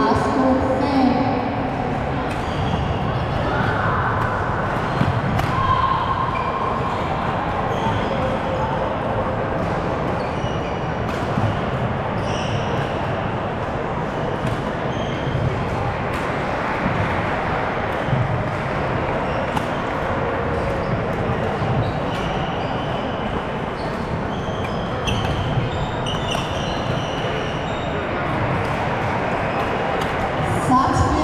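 Badminton hall din: a steady hubbub of many voices across a large echoing hall. Scattered sharp racket-on-shuttlecock hits and short shoe squeaks on the wooden court run through it.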